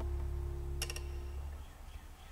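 The last chord on an acoustic guitar rings on and slowly dies away. Three quick clicks come close together about a second in.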